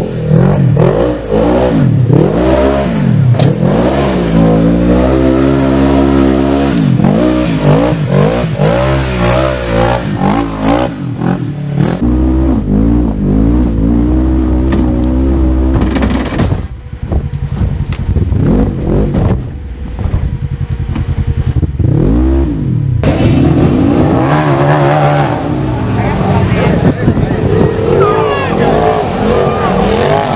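Polaris RZR XP900 side-by-side's twin-cylinder engine revving up and down in repeated bursts as it is driven hard over rough ground. For a stretch in the middle the sound turns duller, then opens up again.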